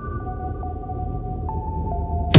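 Sparse electronic music from a deathstep track: a few held synth tones stepping to new pitches every half second or so over a low rumble, a quiet break in the track.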